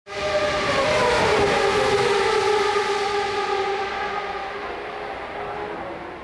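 A racing car's engine at high revs, its pitch sliding slowly down as it fades away, like a car passing and pulling away.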